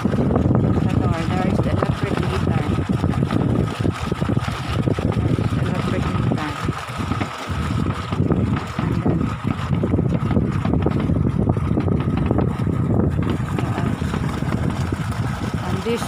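Deep-well irrigation water gushing steadily from a pipe into a concrete basin, with gusty wind buffeting the microphone and a faint steady high tone above it.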